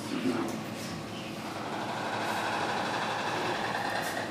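White stork clattering its bill: a rapid, steady rattle that starts about a second in and lasts about three seconds, after a few sharp knocks.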